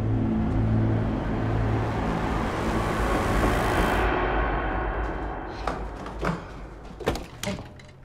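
Car road noise with a low hum, swelling and cutting off about four seconds in, then several knuckle knocks on a glass door, the loudest near the end.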